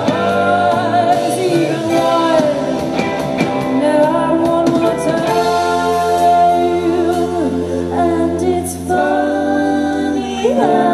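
Indie synth-pop band playing live: a woman sings lead over a keyboard synthesizer, electric guitars and drums.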